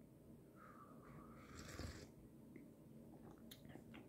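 A faint sip of coffee from a glass mug: a soft, short slurp about a second and a half in, followed by a few small mouth clicks near the end.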